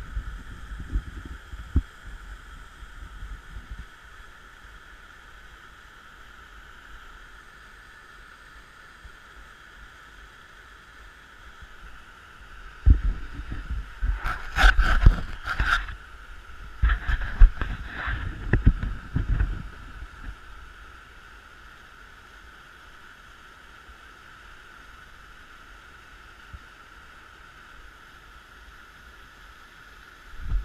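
Muddy flash-flood water pouring down a narrow sandstone chute: a steady rushing noise. About halfway through, several seconds of wind buffeting the microphone rumble over it, then die away.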